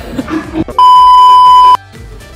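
A loud, steady, high-pitched bleep tone added in editing, a single pure beep of the censor-bleep kind. It lasts about a second, cutting in and out abruptly.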